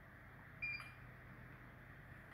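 An electrical installation tester gives one short, high-pitched beep a little over half a second in as it takes a low-resistance continuity reading between the active and the test point. Otherwise there is only quiet room tone.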